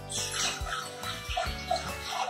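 Water pouring from a plastic jug into a stainless steel pot, a steady splashing hiss, over background music with a regular beat.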